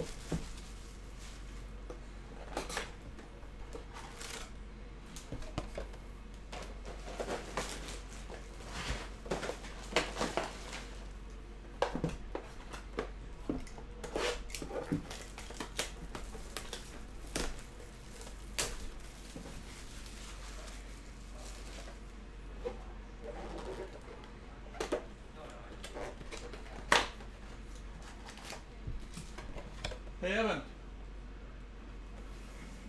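A cardboard trading-card box being opened and its foil-wrapped card packs handled and stacked on a table. Irregular rustles, crinkles and short taps, with one sharp knock near the end.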